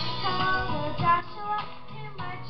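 Children singing a melody over an instrumental accompaniment.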